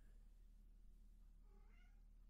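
Near silence over a steady low electrical hum, with a faint, short pitched call that bends up and down about a second and a half in.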